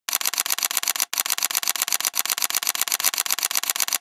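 Rapid, evenly spaced clicking, about a dozen clicks a second, with a brief break just after a second in.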